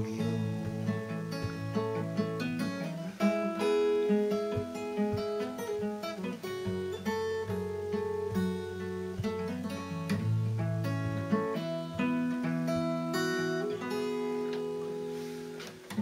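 Steel-string acoustic guitar with a capo, fingerpicked in an instrumental break: chords picked out note by note, ringing on, easing off in level just before the end.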